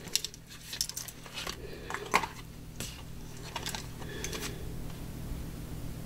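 A scatter of light clicks and clinks, about ten in the first four and a half seconds, from small hard objects being handled, over a faint steady hum.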